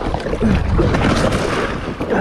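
Wind buffeting the microphone over water rushing and splashing along the hull of a moving kayak.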